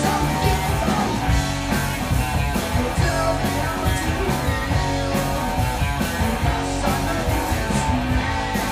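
Live rock band playing: electric guitars and a drum kit, amplified through a PA.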